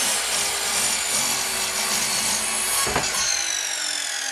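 Electric compound mitre saw cutting through a thick, old wooden plank: steady blade-in-wood noise over the motor's high whine, with a knock about three seconds in, after which the whine falls in pitch.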